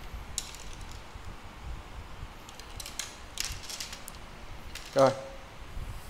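A three-piece fishing rod being handled: a few scattered light clicks and rubbing sounds as it is turned in the hands.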